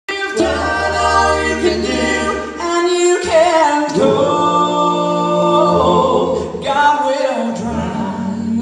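Male gospel quartet singing in close harmony, holding long chords that change every second or two over a strong low bass part.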